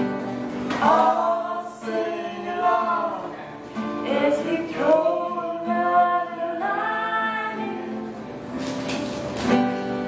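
A woman and a man singing a folk song together, with acoustic guitar accompaniment.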